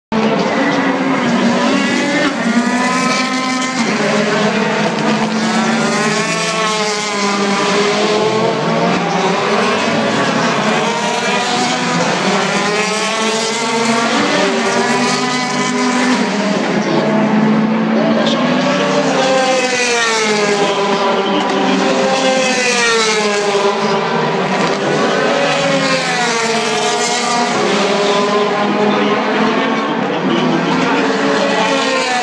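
DTM touring cars' V8 racing engines running hard on the circuit, several overlapping, their pitch repeatedly climbing through the gears and dropping away as cars pass, every few seconds.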